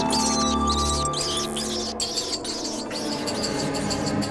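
Rats squeaking over background music, high-pitched squeaks that are thickest in the first second or so.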